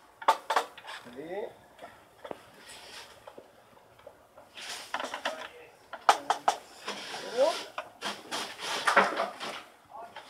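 Screwdriver turning screws out of the plastic top housing of a Philips HD92XX airfryer: irregular bursts of clicking and scraping as the blade works the screw heads.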